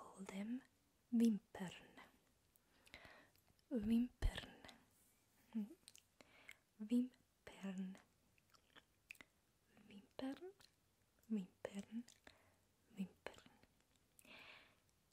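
A soft-spoken woman's voice saying short, separate words close to the microphone, with wet mouth sounds between them and a low thump about four seconds in.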